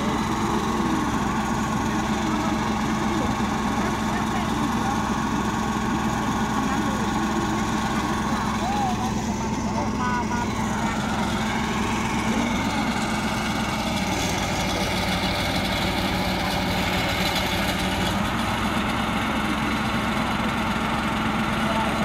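Engine of a small crane truck idling steadily with a constant low hum, running to power the truck-mounted boom crane.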